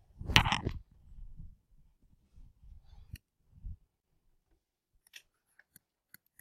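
A brief loud burst about half a second in, then a quiet room with a few faint, sharp clicks near the middle and toward the end.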